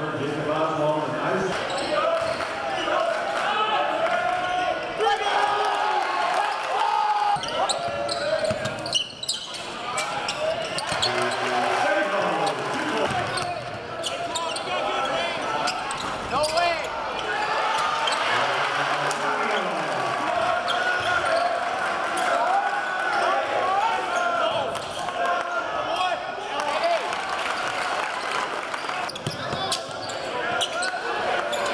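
Sound of a basketball game in a gymnasium: continuous crowd voices and chatter, with a basketball bouncing on the court.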